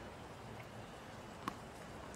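Tennis ball struck once by a racquet, a single sharp pop about one and a half seconds in, over faint steady stadium ambience.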